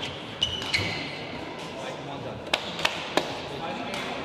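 Sports-hall badminton sounds: two short shoe squeaks on the court floor early on, then three sharp racket-on-shuttle clicks in quick succession in the second half, over indistinct background voices echoing in the hall.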